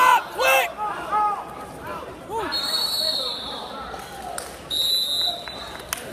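Shouts ring out in a gym for about the first second. Then come two steady, high-pitched whistle blasts, one about a second long midway and a shorter one near the end, as a referee's whistle stops the wrestling.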